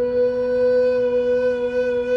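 Recorder holding one long note an octave above a steady, unchanging organ drone.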